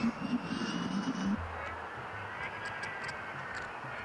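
Steady distant engine noise, with a faint high whine that slides slowly in pitch. A low rumble fades out about a second and a half in.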